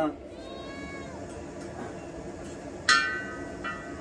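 Domestic cat meowing twice: a faint meow near the start, then a sudden, louder meow about three seconds in.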